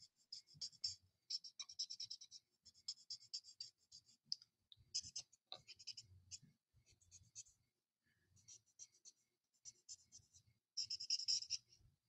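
Stampin' Blends alcohol marker scratching across white cardstock in quick, short coloring strokes: faint and scratchy, coming in runs with short pauses, and loudest in a burst of strokes near the end.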